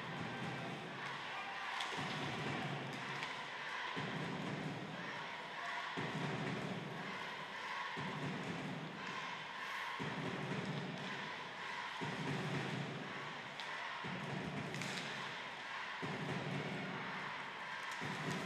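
Ice hockey arena crowd noise with a fans' drum beating in a slow, regular pattern that repeats about every two seconds.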